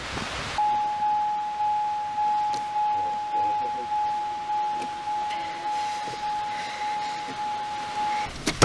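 A truck's door-open warning chime dinging on one steady pitch, a little under twice a second. It starts about half a second in and keeps going.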